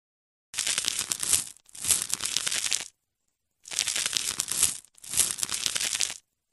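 Crisp, crackly scraping-and-crunching sound effect of the kind used as ASMR cutting foley, in four bursts of about a second each separated by short silences.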